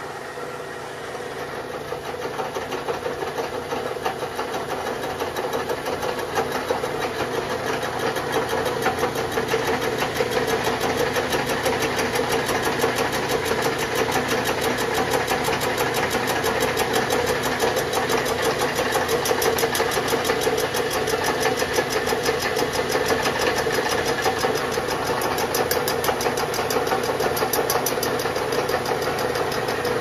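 A 14-inch PCD flycutter on a vertical milling machine, spinning at about 600 RPM and taking a cut across an aluminum engine-block deck at maximum table feed: a rapid, regular ticking of the insert striking the metal over a steady machine hum. It grows louder over the first ten seconds or so, then holds steady.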